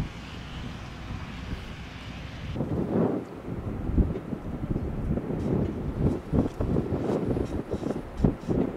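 Wind buffeting the microphone in uneven gusts. A steady hiss in the first part cuts off suddenly about two and a half seconds in, where the rumble grows louder and gustier.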